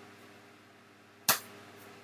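A single sharp click a little over a second in, during a pause in the talk.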